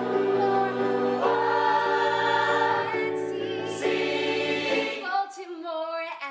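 Music: a choir of voices singing long held chords, changing chord about a second in. About five seconds in the lower parts drop away, leaving a higher voice holding a note with vibrato.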